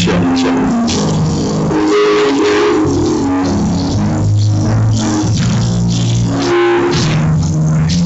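Live church band music: held bass and chord notes changing every second or so, with short percussive hits, as the instrumental lead-in to a gospel choir song.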